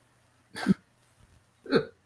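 Two brief chuckles of laughter, one about half a second in and one near the end, each a short falling burst, with a hush between them.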